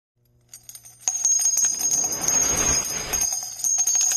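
Jingling bells ringing, with many rapid small metallic clicks over steady high ringing tones, starting sharply about a second in after a few faint ticks.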